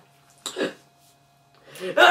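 A man's short cough about half a second in, then quiet with a faint steady hum, and a man's voice starting near the end.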